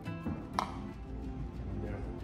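Background music breaking off, then a single sharp knock about half a second in, over a low steady room rumble.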